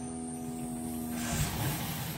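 A submersible 1100 gallon-per-hour water pump runs with a steady hum. About a second and a half in, the hum fades and a hiss of water spraying from the PVC irrigation pipe's nozzles takes over: the pump gives enough pressure to drive the spray.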